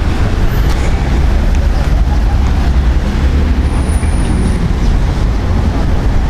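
Street traffic noise: a loud, steady low rumble of passing vehicles, with a brief high tone about four seconds in.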